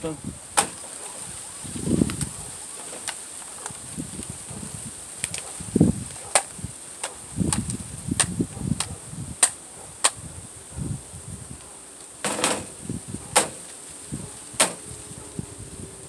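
Small plastic toys being handled: a string of sharp clicks and knocks with softer rustling thuds, over a steady high insect drone.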